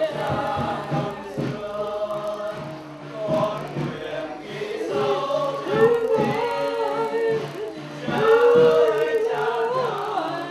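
A group of voices singing a slow melody with long held, gliding notes, over a steady low musical backing.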